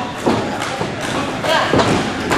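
Several thuds of bodies and feet hitting a wrestling ring's canvas-covered floor, over crowd chatter and shouts.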